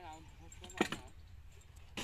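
A single short metallic clink about a second in, over a steady low rumble, with a brief voice at the start.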